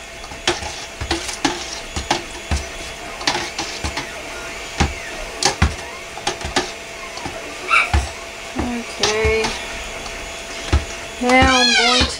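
Immersion stick blender working thick soap batter in a stainless steel pot: irregular knocks and clunks of the blender against the pot over a steady hum. The batter is thickening fast toward trace.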